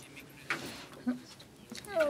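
A short pause in a man's speech, filled only with a few faint, brief vocal sounds and breaths. A short spoken syllable with falling pitch comes in near the end.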